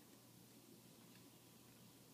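Near silence: faint, steady background noise with no distinct sound.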